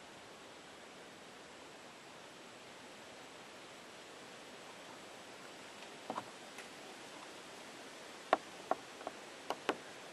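Quiet outdoor background: a faint steady hiss, then several short sharp clicks during the last four seconds.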